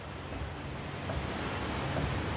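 Steady background hiss with a low hum, and a few faint clicks as a front wheel hub is rocked back and forth by a steel bar bolted to its studs. The clicks come from play in the hub's worn wheel bearing.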